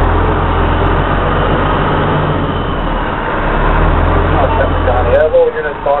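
Fire rescue truck's engine running with a steady low rumble, heard from inside the cab as the truck moves slowly, swelling a little about a second in and again near the end. A voice comes in over it in the last second or so.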